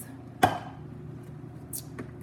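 A single sharp knock of something hard bumped or set down on a stone kitchen countertop about half a second in, over a faint steady hum.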